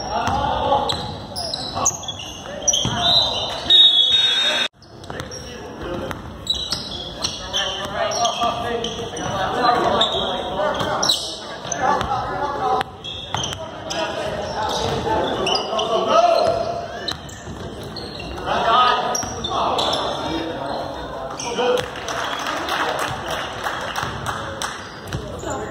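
Basketball being dribbled on a hardwood gym floor during play, the bounces echoing in a large gym, with indistinct voices of players and spectators.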